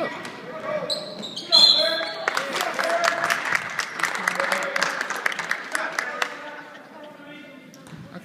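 Sounds of a basketball game on an indoor court: a ball bouncing on the hardwood and voices of players and spectators, echoing in the gym. The loudest burst comes about a second and a half in, followed by a busy stretch of quick knocks that dies down near the end.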